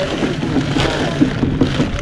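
Wind buffeting the microphone in a steady rumbling rush, with faint voices in the background.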